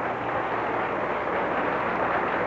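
Studio audience applauding steadily as a song ends.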